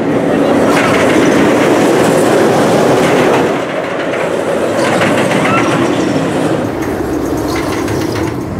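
Rocky Mountain Construction hybrid roller coaster train running along its steel I-box track over a wooden structure: a loud, continuous rumble that eases slightly about halfway through.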